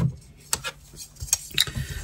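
A long metal ruler and a plastic quilting ruler being handled on a craft table, giving about half a dozen light clicks and clinks.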